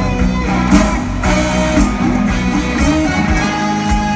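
Live band playing an instrumental passage of a pop-rock song between sung verses, sustained notes over a steady beat.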